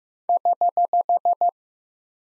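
Morse code sidetone sending the error (correction) prosign HH: eight short dits of one steady pitch in quick, even succession, at 15 words per minute.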